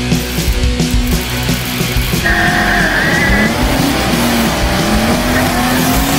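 Rock music with a beat. About two seconds in, a drag car doing a burnout comes in over it: the engine revving up and down with tyre squeal.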